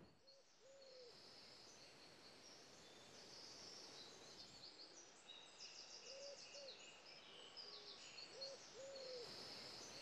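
Faint garden birdsong: high chirps and trills from small songbirds, with a low cooing call near 500 Hz heard about a second in and then twice in pairs later on.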